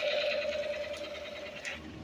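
A child's voice holding one steady note that slowly fades away over about two seconds, a vocal sound effect in make-believe play.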